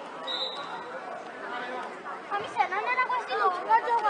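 Several children's voices chattering over one another, growing louder from about halfway through as the team gathers in a huddle.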